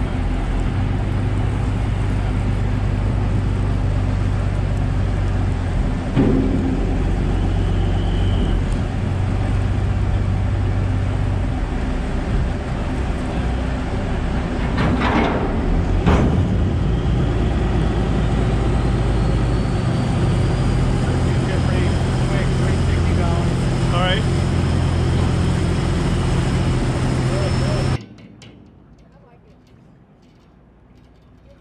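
A boat engine runs steadily close by, its pitch shifting slightly now and then, with a couple of short sharp sounds about halfway through. It cuts off about two seconds before the end, leaving quieter outdoor sound.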